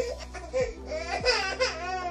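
A baby vocalizing in a few short high-pitched cries and squeals. Under it runs a steady music bed with a deep bass stroke about every half second to second.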